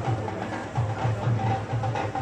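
Parade band music with drums keeping a steady beat, about three strokes a second, under a sustained melody line.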